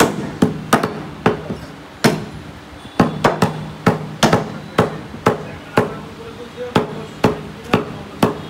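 Meat cleavers chopping beef on round wooden chopping blocks: sharp, irregular chops, a little over two a second, from two butchers working at once.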